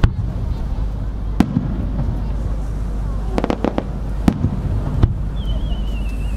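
Aerial fireworks shells bursting: sharp bangs spaced about a second apart, with a quick run of four bangs in the middle, over a steady low rumble. Near the end a thin, wavering whistle sets in, drifting slightly down in pitch.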